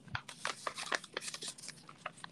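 Paper rustling and crinkling as it is folded into an origami square base, a quick, irregular run of short crackles.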